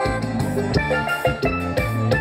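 Live band music: a keyboard melody in steady held tones over a regular drum and bass beat.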